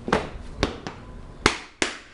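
Plastic latches of a Pelican 1520 hard case being snapped shut: a few sharp clicks, the two loudest near the end about a third of a second apart.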